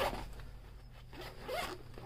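Zipper on a fabric carrying case being pulled open, loudest at the start and then fading off.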